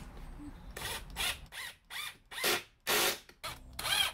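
Cordless impact driver driving a pocket-hole screw into a pine frame joint in several short bursts of the trigger, the motor whining up and down with each burst.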